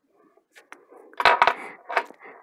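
Small clicks and knocks of a pin and other small objects being handled on a wooden tabletop: a single click about half a second in, a cluster of sharper knocks about a second in, and a few lighter ticks near the end.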